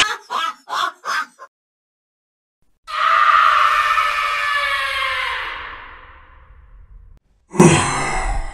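A long, high scream-like horror sound effect that starts suddenly and fades away over about four seconds, after a few short clipped bursts of sound at the start. Near the end a loud, deep monster grunt begins.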